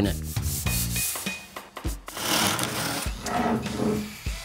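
Sandpaper on a handled hand-sanding block rubbing back and forth along the edge of a planed ironbark board, taking off the sharp edges of the very hard timber.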